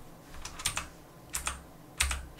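A few quiet, light clicks like computer keyboard keys being pressed, in two quick pairs under a second apart, over a faint low hum.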